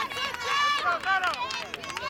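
Several raised voices shouting and cheering at once, high-pitched calls overlapping one another.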